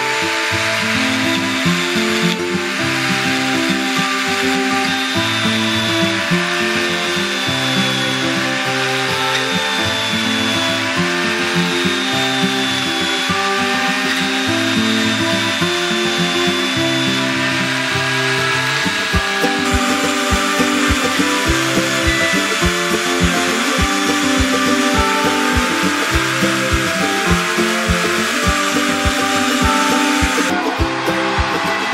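Electric drill running as a makeshift lathe while a chisel cuts grooves into a spinning wooden wheel, the whirr and scraping of the cut mixed under background music that picks up a steady beat about two-thirds of the way through.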